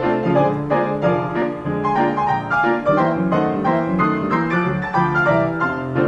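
A 1924 Marshall & Wendell Ampico upright player piano playing an 88-note paper music roll, its keys worked pneumatically by the roll rather than a pianist: a lively, continuous run of melody over steady rhythmic chords.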